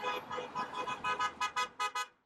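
Car horns honking: one held horn tone with short repeated toots over it, the toots coming faster near the end.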